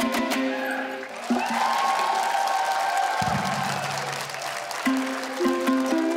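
Live Kazakh ethno-fusion ensemble music. Fast dombra strumming breaks off just after the start, giving way to sustained held tones and a low note. Plucked string notes come back in near the end as the ensemble moves into a new section on other instruments.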